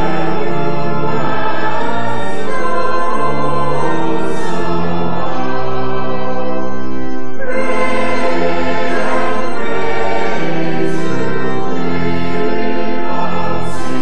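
Church choir singing in parts, with organ accompaniment, held chords that change every second or so.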